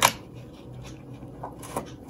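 Hands handling a silver snake-chain bracelet in its cardboard gift box: one sharp click as it begins, then quiet handling with a couple of faint clicks near the end.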